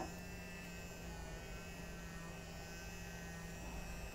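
Electric silicone face brush's vibration motor running with a steady, quiet hum.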